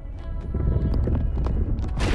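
Animated action soundtrack: a deep rumble with a rapid run of knocks and crackles under fading dramatic music, swelling into a loud burst of noise at the very end.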